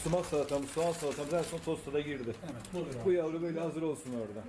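A man's voice talking throughout; no other sound stands out.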